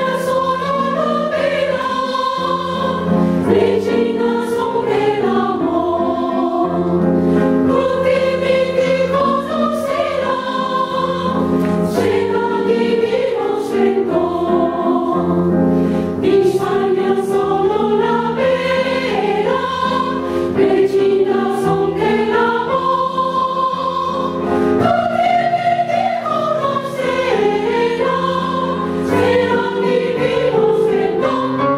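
Women's choir singing sustained, flowing melodic lines in parts, accompanied by a grand piano.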